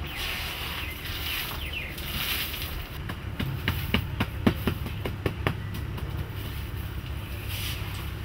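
Hard, dry tea seeds clicking and knocking against one another as they are picked over by hand, a quick run of about ten clicks in the middle. Underneath is a steady low outdoor rumble.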